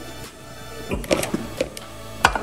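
Background music with a steady beat. About a second in there are several light clicks as cherry tomatoes are set into a glass baking dish.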